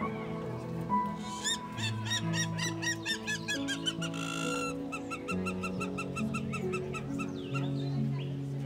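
Slow piano background music, with a bird calling in quick repeated arching notes, about four a second, from about a second and a half in; a second, lower run of the same kind of notes follows around the middle.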